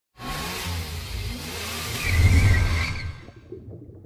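Logo intro sound effect of a car engine revving with a whoosh, building to its loudest about two seconds in and fading away by three seconds.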